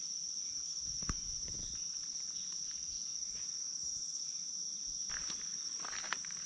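Steady high-pitched drone of an insect chorus in summer woodland. There is a single knock about a second in, and a few footsteps on the forest floor near the end.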